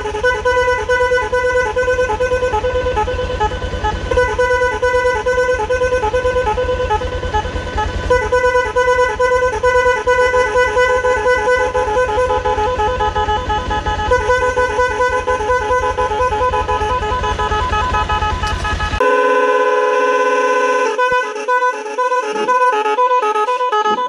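A pair of electric snail horns on a motorcycle, driven by an aftermarket horn tuner, sounding a loud, rapidly pulsing multi-tone pattern that repeats. Near the end it switches to a different, steadier tone pattern.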